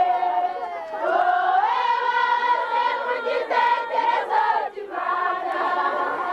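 A group of many voices singing a hymn together, with the melody held and gliding around a steady pitch.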